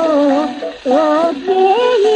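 A woman singing a Sindhi song, her melody wavering and ornamented, with a short break for breath a little before a second in.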